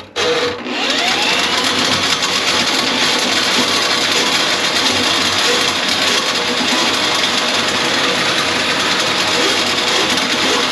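Powered drain auger running, its cable spinning inside a kitchen sink drain line clogged with grease. The motor starts about half a second in, spins up, and then runs steadily.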